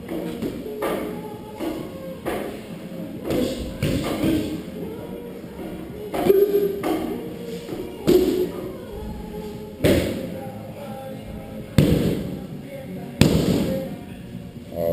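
Kicks and punches landing on Thai pads: about a dozen sharp thuds at irregular intervals, roughly one every second or two.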